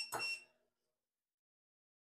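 A metal spoon clinking briefly with a short ring during the first half second, then silence.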